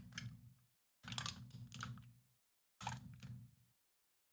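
Faint clicking and tapping of a computer keyboard in three short bursts, each cutting off to dead silence.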